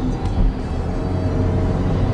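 In-cabin sound of a 2020 Chevy Equinox's 2.0-litre turbocharged four-cylinder engine pulling under acceleration, with a steady hum over low road rumble.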